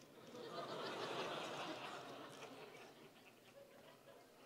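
Audience laughing quietly. The laughter swells about a second in and dies away over the next two seconds.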